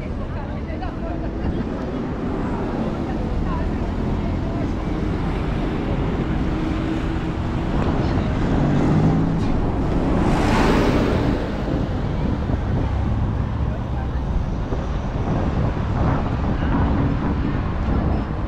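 Busy city street traffic with people's voices around; about ten seconds in, a city bus passes close by in a rush of engine and tyre noise that swells and fades, the loudest moment.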